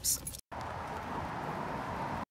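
Steady street ambience: an even hiss of traffic noise that starts at a cut about half a second in.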